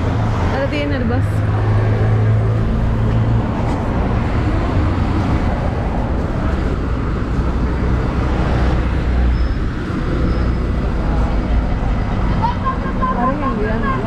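Busy city street traffic, with a heavy vehicle's engine running steadily close by. The voices of people walking past come over it, most clearly near the start and near the end.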